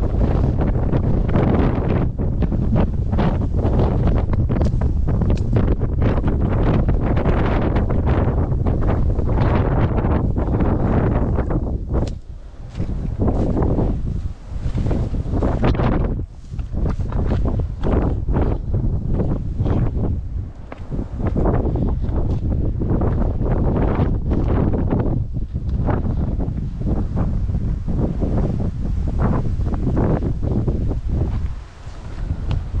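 Strong wind buffeting the camera microphone: a loud, low, fluttering rumble that eases off briefly a few times in the middle before picking up again.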